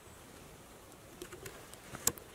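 A pigeon cooing faintly, a few soft low notes a little past halfway, over a quiet background.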